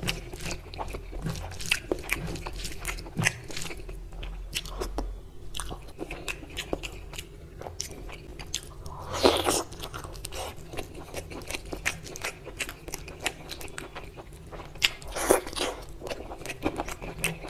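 Close-miked ASMR eating sounds of mutton curry and rice eaten by hand: steady chewing with many small wet clicks and smacks, and fingers squishing rice into the curry gravy. Two louder, longer bursts come, one about halfway through and one near the end.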